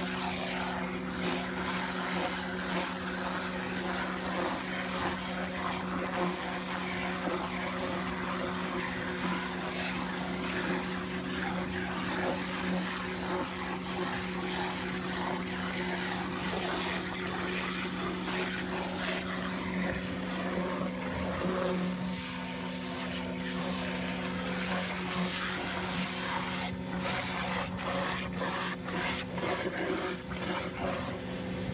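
SmartVac hydrovac excavation truck digging: the vacuum system and its drive engine run with a constant hum, under the hissing wash of the high-pressure water dig wand and mud slurry being sucked up the vacuum hose. A run of rapid clicks comes near the end.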